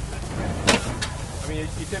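1910 Columbia hay baler, belt-driven by a Farmall H tractor, running with a steady low rumble, a sharp knock about two-thirds of a second in and a lighter one at about a second.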